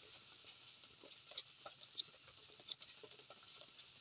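A handheld plastic lighter handled in the fingers: three short sharp clicks, about a second and a half in, at two seconds and near three seconds, over a faint steady high hiss.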